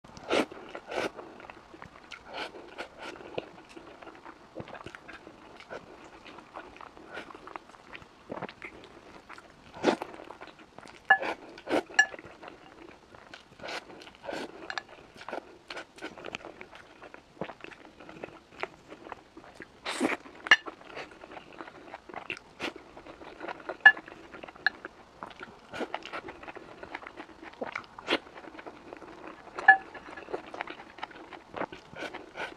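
Close-miked eating sounds: chewing and mouth smacks of rice and saucy tomato-and-egg stir-fry, with irregular sharp clicks and a few louder smacks every second or so.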